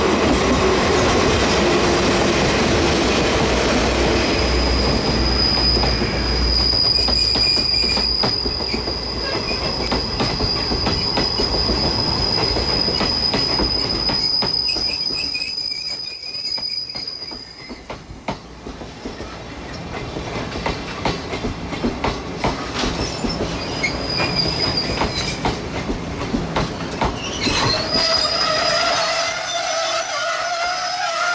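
Sleeper train hauled by DE10 diesel-hydraulic locomotives passing close by as it runs into a station. The locomotives' engine rumble comes first, then a high steady wheel squeal runs for about the first half as the cars roll past. Later come repeated clicks of wheels over the rails and, near the end, lower wavering squeals as the train slows to stop.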